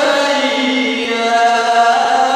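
A man's voice chanting a Pashto noha, a mourning lament, into a microphone, with a long held note in the second half.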